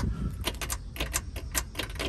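Keys and a metal key tag jangling and clicking as the ignition key of a 1967 Camaro is worked in its lock: a run of quick, irregular clicks. The starter does not crank, because the automatic car is not yet in park.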